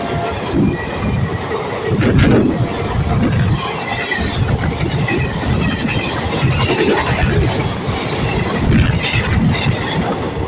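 Express train coaches passing at high speed, about 130 km/h: a loud, continuous rumble with a rapid clatter of wheels over the rail joints. The tail of a horn blast cuts off right at the start.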